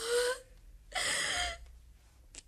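A woman's voice draws out an 'oh' that fades off about half a second in, then gives a gasping breath about a second in.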